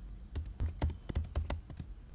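Typing on a computer keyboard: an uneven run of key clicks, several a second.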